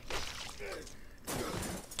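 Anime sound effect, played quietly: a crunching, shattering impact as the Beast Titan kills a Titan, about two thirds of the way in, after faint anime dialogue.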